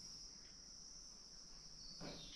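Faint, steady, high-pitched drone of insects calling outdoors.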